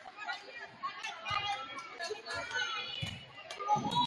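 Indistinct chatter of girls' voices and spectators echoing in a school gymnasium, with a few short sharp knocks.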